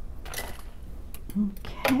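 Light metallic clicks and clinks of a gold brass jewelry chain and small metal findings being picked up and moved on the work mat: a few separate clicks, the loudest near the end.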